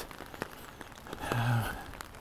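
Light rain pattering faintly with scattered soft ticks, and a short low hummed 'mm' from a man about one and a half seconds in.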